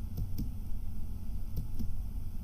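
Computer keyboard space bar pressed twice, about a second and a half apart, each press a quick pair of clicks.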